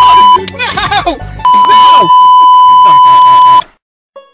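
Loud steady censor bleep laid over a man's speech: a short bleep at the start, then a longer one of about two seconds, with his talk heard between them. Everything cuts off suddenly just before the end.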